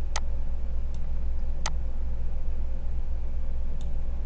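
Two sharp computer mouse clicks about a second and a half apart, with a couple of fainter ticks, over a steady low electrical hum.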